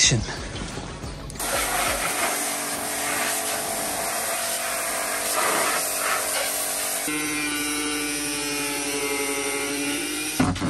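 Electric pressure washer spraying water over a stripped car front end and engine bay: a steady hiss of spray. About seven seconds in it changes abruptly to a steady humming motor with a clear pitch.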